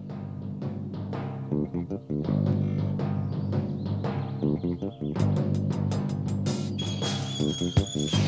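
Background soundtrack music with steady low held notes and drums; about five seconds in, a fast run of sharp percussive strokes joins in.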